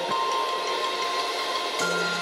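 Chillout music in a quiet passage without drums: soft held notes, with a new low note and a higher tone coming in near the end.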